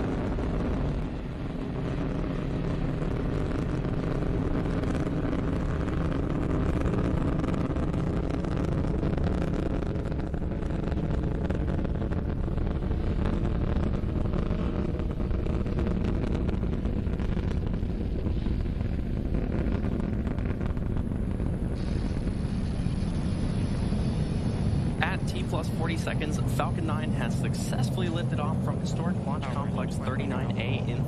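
Falcon 9 rocket's nine Merlin 1D first-stage engines climbing away after liftoff: a continuous deep rumble. A thin high steady whine joins about two-thirds of the way through, and crackling comes in near the end.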